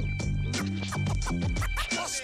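Hip-hop beat with a bass line stepping between held low notes and drum hits, with a DJ scratching a record on a turntable over it.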